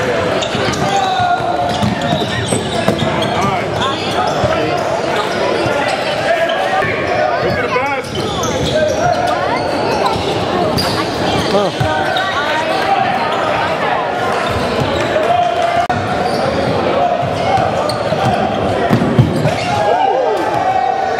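Basketball game ambience in a large gym: a ball bouncing on the hardwood court among the chatter and calls of players and spectators, all echoing in the hall.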